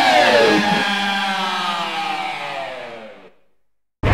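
The closing held notes of a heavy metal track ring out, bending down in pitch, and fade away to silence about three seconds in. A loud new track starts right at the end.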